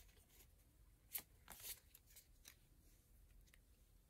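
Very faint handling of trading cards fanned in the hand: a soft snap about a second in, a short swish just after, and a few light ticks.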